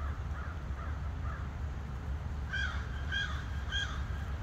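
A bird calling three times in quick succession in the second half, after a few fainter calls near the start, over a steady low rumble.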